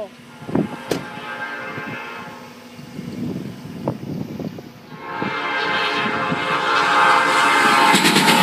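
Diesel locomotive air horn sounding as an Illinois Central engine approaches a grade crossing. It gives a fainter blast early on, then a long blast from about five seconds in that grows louder as the locomotive nears.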